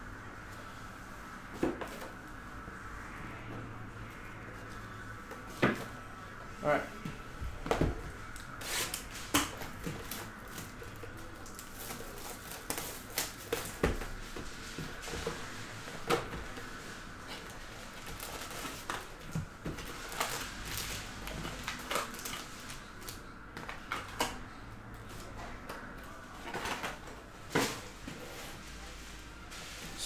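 Hands handling a cardboard trading-card hobby box and its foil card packs: scattered short clicks, taps and crinkling rustles over a faint steady hum.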